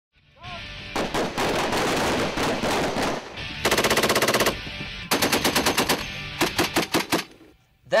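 Automatic machine-gun fire: about two seconds of dense, overlapping shooting, then three separate bursts, the first a very rapid string of evenly spaced shots.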